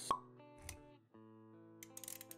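Sound effects from an animated intro over soft background music: a sharp pop just after the start and a short low thump a moment later. After a brief break about halfway, sustained music notes carry on.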